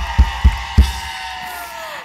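Live band playing a short interlude between band introductions: a few kick drum beats in the first second under a long held note that slides slowly down in pitch and fades away.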